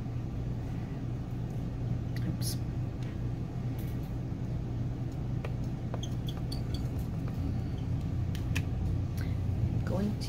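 A steady low hum with a few light, scattered clicks and taps as a clear acrylic stamp block and paper are handled on a craft mat.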